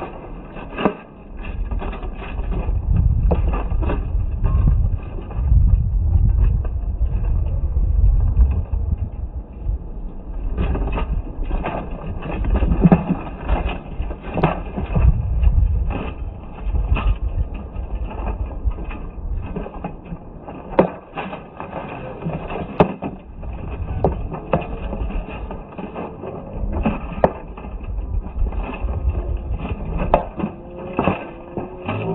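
Slowed-down sound of a sword fight: irregular, drawn-out knocks of weapons striking each other and the fighters' armour, more frequent in the second half, over a low wind rumble on the microphone that is heaviest in the first part.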